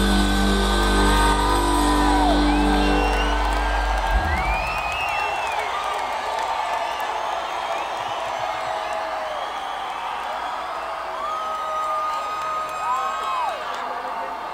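A live rock band's final chord ringing out with a heavy low end, stopping about four seconds in. The audience in the hall follows with cheering, whoops and long whistles.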